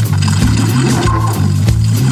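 Recorded rock or blues band music with a steady beat: a loud pulsing bass line under drums.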